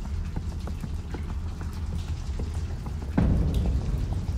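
Wet clay and water in a flooded shaft bottom being worked by gloved hands: scattered small drips and wet clicks over a low steady rumble, with a louder squelch about three seconds in.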